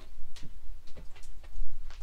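A dog's claws clicking on the van's tiled floor as it walks out, a few irregular clicks over a low steady rumble.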